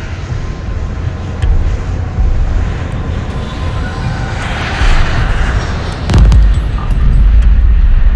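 Jet airliner passing overhead: a deep rumble with a rush that swells and peaks about five seconds in, then a sudden loud boom about six seconds in.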